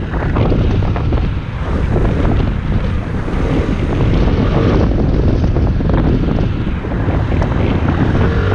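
Wind rumbling over the microphone of a moving Yamaha X-MAX 250 scooter, mixed with its single-cylinder engine and road noise as it rides and gathers speed. The rumble grows a little louder about halfway through.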